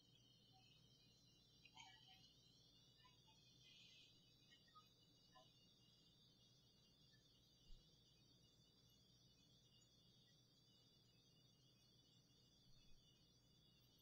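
Near silence, with a few faint short ticks.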